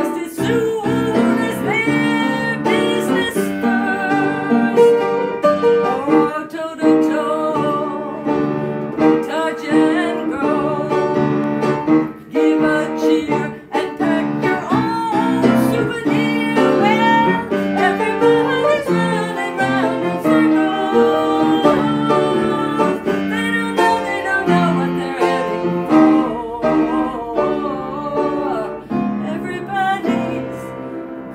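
Upright piano being played, a continuous run of chords and melody, heard through a tablet's built-in microphone.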